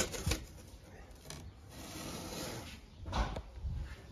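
Faint handling noise around an opened cardboard box: light rustling and a few soft knocks, the loudest about three seconds in.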